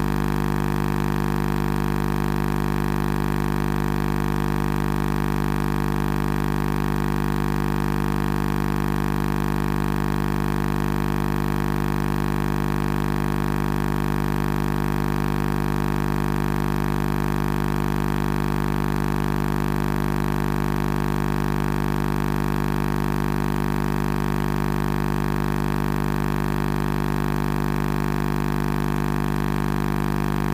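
A steady, unchanging hum with many overtones, strongest in the low range, that holds at one level throughout without a break.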